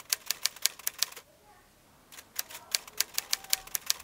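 A quick run of sharp clicks, about six a second, in two bursts with a short pause between.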